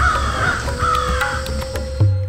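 A bird's harsh cawing calls repeated in quick succession, fading out in the second half, over background music with a steady bass.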